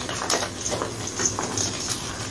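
Hands squeezing and crumbling soft blocks of dyed gym chalk over a bowl of powder: a string of irregular soft crunches over a powdery hiss.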